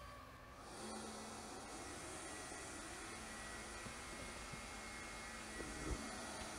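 Lefant M210 robot vacuum running, a steady hiss-like whir with a faint high steady tone, coming up a little under a second in.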